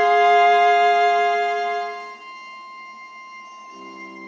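Sampled solo viola from the Bunker Samples Intimate Viola (Iremia) library playing soft sustained notes. A loud held pair of notes fades out about two seconds in, leaving a quiet high tone, and new lower notes swell in near the end.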